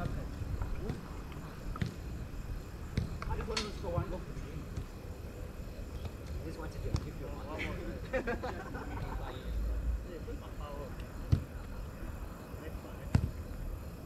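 Distant shouts and calls from players across a small-sided football pitch, with sharp knocks of the ball being struck, the two loudest near the end.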